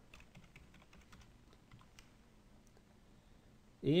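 Faint, irregular keystrokes on a computer keyboard, with a few light clicks, as a number is typed into a dialog box.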